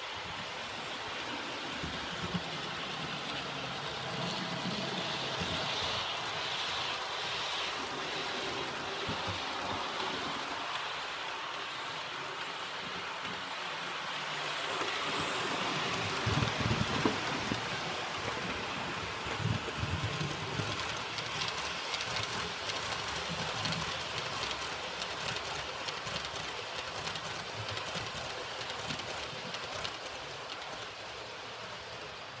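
Bemo model trains running on the layout's track: a steady whirring rumble of motors and wheels with rapid clicking over the rail joints. It is loudest a little past the middle, as a train runs close by.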